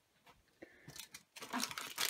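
Plastic foil wrapper of a small toy package crinkling and tearing as it is opened, starting about halfway through after a quiet moment.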